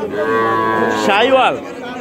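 A young heifer calf mooing once, a steady, drawn-out call lasting about a second.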